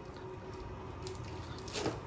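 Quiet room background with a low steady hum and a faint click about a second in.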